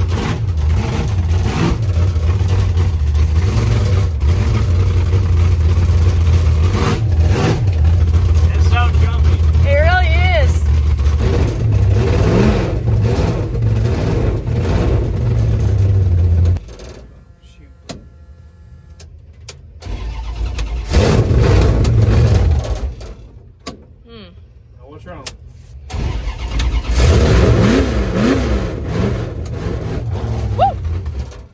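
V8 drag-car engine turning over on the starter without staying running: one long crank that cuts off abruptly about sixteen seconds in, then two shorter tries after pauses. The car is hard to start.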